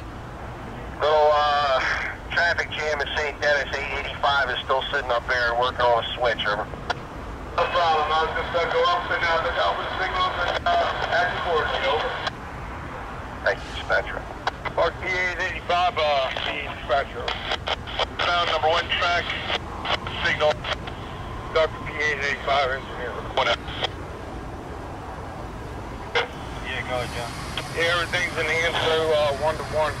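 Railroad radio voice transmissions over a scanner, several in a row that start and stop abruptly, over a low steady background rumble.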